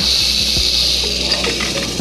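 Rattlesnake rattling, a steady high buzz that fades near the end. It comes from the mother snake as she and her newborn babies are handled with tongs.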